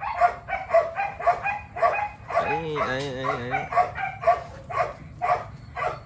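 Belgian Malinois dog whining and yipping in quick, short, repeated cries, with one longer wavering whine about two and a half seconds in.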